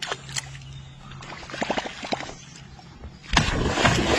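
A topwater fishing lure being worked across the surface with a few short splashy clicks. About three-quarters of the way in, a fish strikes it with a sudden, loud, churning splash that keeps going.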